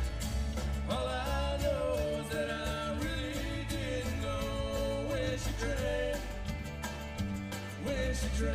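Live country band playing, with banjo, acoustic and electric guitars and drums over a steady bass; a lead melody rides on top from about a second in until about six seconds.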